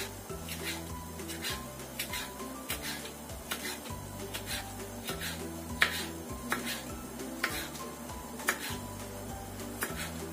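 Knife blade tapping sharply on a wooden cutting board as large chili peppers are sliced lengthwise into strips, roughly one stroke a second with the firmest cut about six seconds in, over background music.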